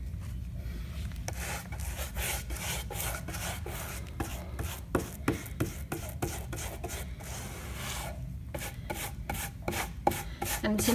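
A paintbrush stroking thick bitumen waterproofing paint onto plywood: a repeated scratchy rubbing with each back-and-forth stroke, over a steady low rumble.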